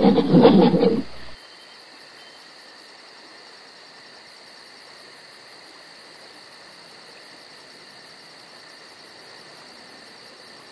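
A gorilla's loud, low vocalization breaks off about a second in. It leaves a faint, steady hiss with a thin high hum.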